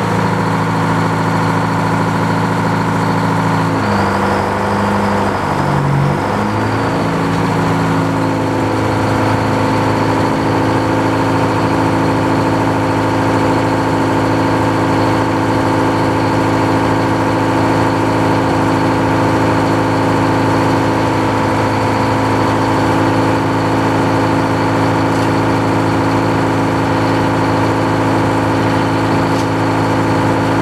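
The engine powering a belt-driven circular sawmill runs loudly as the big saw blade comes up to speed. Its pitch shifts a few times in the first several seconds, then settles to a steady run with no wood being cut.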